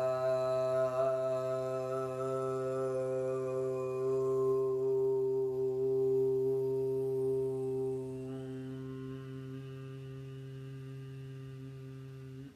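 A woman chanting one long Aum in a single breath, held on one low, steady pitch. The open vowel narrows, and about two-thirds of the way through it turns into a quieter closed-lip 'mm' hum that runs until just after the end.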